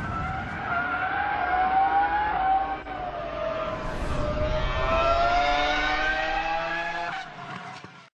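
Racing car sound effect: a high-revving engine note that climbs, dips about three seconds in, climbs again, and fades out near the end.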